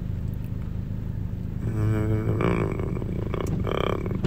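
A low, steady rumble runs throughout. About two seconds in, a man's voice starts murmuring or humming softly.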